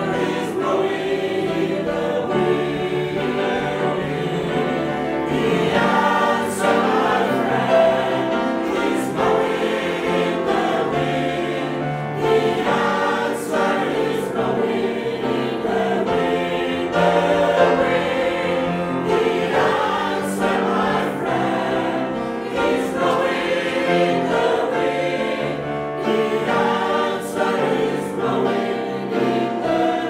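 Choir singing.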